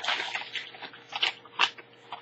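A padded paper mailer and its wrapped contents crinkling and rustling as they are pulled out by hand. A dense crackle comes first, then a few sharp separate crinkles, the loudest about a second and a half in.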